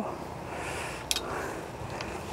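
Fishing pole and line swished once through the air, a short high whoosh about a second in, over steady outdoor background noise.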